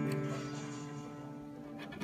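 Music: a held chord fading slowly away.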